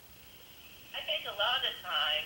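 Faint, thin-sounding speech of a remote participant coming through a phone or video-call line, starting about a second in after a short quiet.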